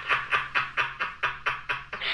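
Breathy, mostly unvoiced laughter: a quick even run of short puffs of breath, about six a second, quieter than the talk around it.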